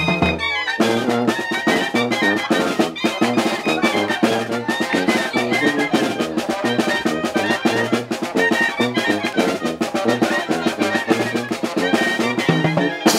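Oaxacan brass band (banda) playing a dance tune: trumpets and other brass over drums, with a steady beat. The music thins briefly just after the start, then the full band comes back in.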